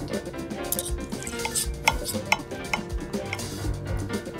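Knife and fork cutting into a thick veal chop on a ceramic plate, with scattered sharp clicks and scrapes of the steel cutlery against the plate.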